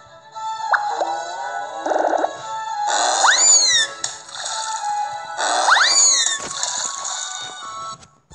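Background music from a children's story app with cartoon sound effects on top: a falling plop about a second in, then two loud swooping sweeps that rise and fall, about three and six seconds in.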